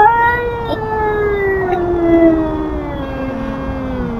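A feral cat's long, drawn-out yowl that rises sharply at the start and then slowly sinks in pitch: a territorial warning at a rival cat.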